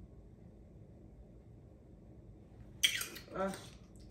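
Faint low room hum, then about three seconds in a woman's voice exclaims a short 'oh'.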